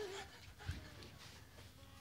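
Mostly quiet room, with a short faint vocal sound at the very start and a soft low thump a little after half a second in.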